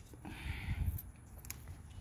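Faint rustling of bean vines and leaves being pulled by hand, with a couple of light clicks.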